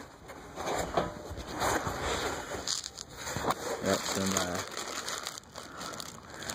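Plastic parts bags crinkling and rustling as they are handled in a cardboard box, in irregular bursts of crackle.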